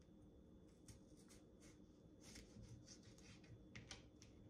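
Faint strokes of a kitchen knife in need of sharpening cutting a raw russet potato into wedges: the blade scrapes through the potato with small, scattered taps on a plastic cutting board.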